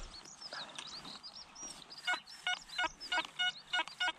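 Birds chirping, then a metal detector sounding a quick run of about six short, pitched beeps over the last two seconds as its coil is held over a dug hole, signalling a target.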